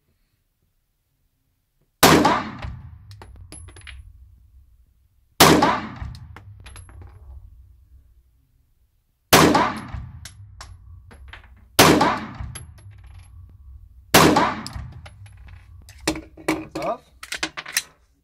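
Glock 9 mm pistol fired five times at uneven intervals, each shot ringing with a long echo in an enclosed indoor range. Near the end comes a quick run of short metallic clicks and clatter.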